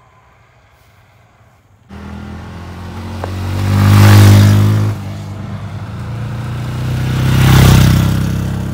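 Two Bajaj Pulsar N160 single-cylinder motorcycles ride past one after the other, accelerating, after about two quiet seconds. The first is loudest about four seconds in, and the second swells up near the end.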